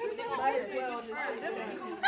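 Chatter: several voices talking over one another.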